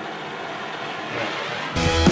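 A gas torch hissing steadily as its flame heats a steel truck bumper. Near the end, loud rock music with guitar and drums cuts in abruptly and drowns it out.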